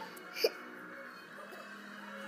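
A toddler's single short hiccup about half a second in, over faint music from a cartoon playing on the television.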